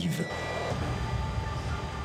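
Steady rumble and hum of an underground suburban RER station with an electric commuter train at the platform, with a short high tone near the start.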